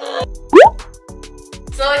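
Background pop music with a steady beat, cut across about half a second in by a short, loud 'bloop' sound effect that slides quickly upward in pitch.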